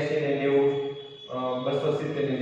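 A man's voice talking with long, drawn-out vowels, with a short break about a second in.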